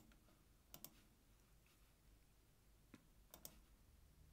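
Near silence broken by a few faint computer mouse clicks. There is a single click, then a quick pair just under a second in, then another single click and a quick pair around three seconds in.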